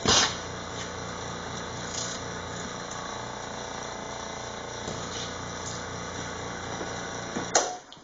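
A small electric pump motor running steadily, supplying suction to a bench-tested vacuum windshield washer pump. There is a click right at the start, and another click about seven and a half seconds in as the motor cuts off.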